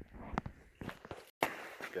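A few footsteps and scuffs on a concrete floor, with a brief dropout just past halfway.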